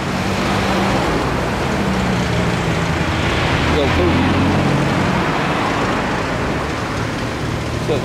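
Rush-hour road traffic on a multi-lane street: a steady wash of tyre and engine noise with the low hum of passing cars' engines, swelling around four seconds in as a vehicle goes by close.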